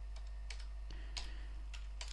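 Computer keyboard being typed on: about five separate keystroke clicks, unevenly spaced, over a steady low hum.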